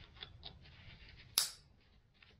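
Light rustling and small clicks of a nylon pouch's flap being folded over, then one sharp, loud click about one and a half seconds in as the flap's plastic buckle snaps shut.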